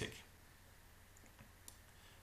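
A couple of faint computer mouse clicks over a steady low hum, near silence otherwise.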